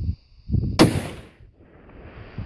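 A single long-range rifle shot fired near the microphone, a sharp crack that fades out over about half a second.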